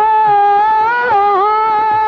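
A male singer holding one long, high note in a Sindhi Sufi kalam, with a quick downward ornament about a second and a half in; soft drum strokes sound faintly beneath.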